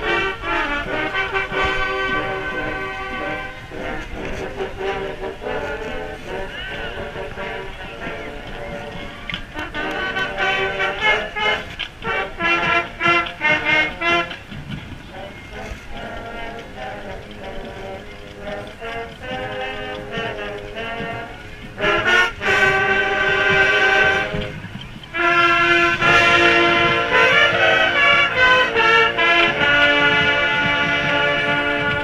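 Marching band playing, heard from inside the ranks: brass chords with rhythmic stabs, getting louder in the second half with hard accented hits and then loud held chords.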